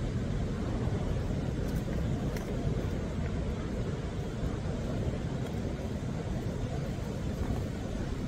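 Ocean surf breaking, a steady low rush.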